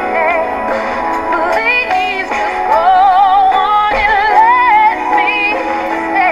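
Two women singing a soul ballad duet with heavy vibrato and quick vocal runs, their lines overlapping at times, over held backing chords.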